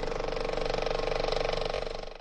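Mechanical ratcheting sound effect, rapid ticking over a steady whir, played with a logo animation as metal letter blocks turn into place.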